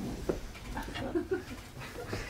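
Several short, high whimpers and yelps in quick succession, each bending up and down in pitch, dog-like, with a couple of sharp clicks just before them.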